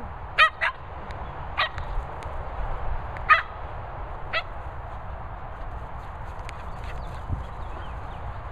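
Dog giving short, high-pitched barks, five in the first four and a half seconds, the first two close together, over a steady low rumble.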